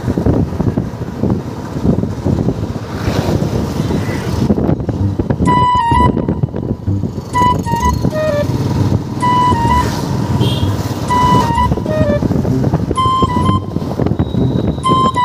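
Wind rumble and road noise while riding a motorbike through town traffic. From about five seconds in, a short electronic tune of high beeps repeats every couple of seconds.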